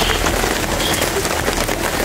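Steady rain pattering on surfaces: a dense hiss made of many small drop impacts.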